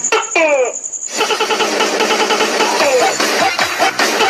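Background music: two quick falling-pitch sounds, then upbeat electronic dance music with a steady beat starts about a second in.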